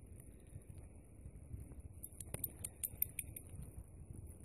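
Faint crunching and rustling in snow and dry grass: a run of small crackles through the middle, over a low wind rumble on the microphone.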